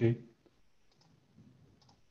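A short spoken 'okay', then a few faint computer-mouse clicks as the presentation slide is advanced.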